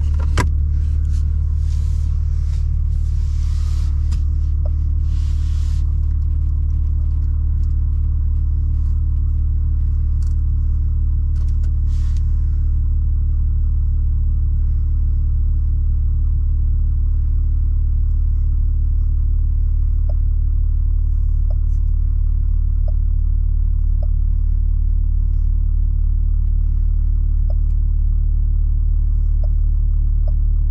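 A BMW M3 Competition's twin-turbo straight-six idles, heard inside the cabin as a steady low hum. Over the first dozen seconds there are rustles and clicks as the small storage compartment under the dash is handled.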